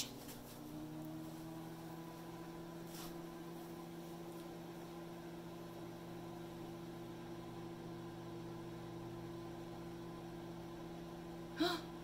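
Oster microwave oven running: a steady low hum, with a higher steady tone coming in just under a second in as it starts heating.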